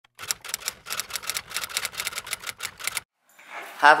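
Rapid, irregular clicking like typing on keys, about seven clicks a second, that cuts off abruptly about three seconds in. A voice begins right at the end.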